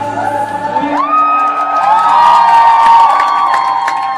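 Student choir with electric guitars holding a loud, long chord that the voices glide up into about a second in, with audience cheering over it.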